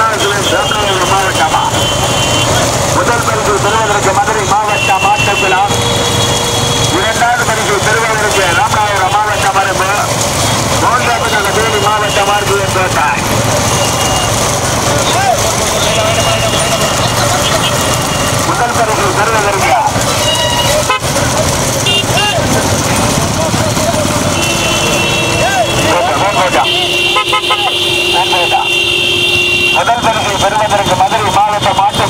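Excited shouting voices over the running engines of a pack of motorcycles chasing a bullock cart race. Horns give short toots in the first part, then one long sustained honk in the last few seconds.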